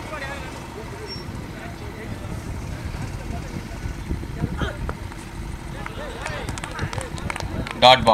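Outdoor voices and crowd chatter over a steady low hum, with a loud shout near the end.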